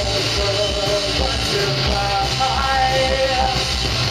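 Live rock band playing loudly, with electric guitar and a drum kit with cymbals.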